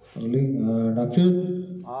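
A person's voice intoning in slow, drawn-out syllables, each pitch held level, with a step to a new pitch about a second in.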